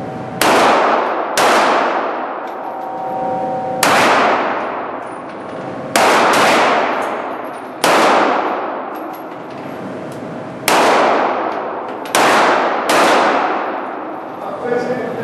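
Pistol shots in an indoor range, about nine in the span at irregular intervals, fired by more than one shooter. Each crack is sudden and is followed by a long echoing ring-out off the hall's hard walls.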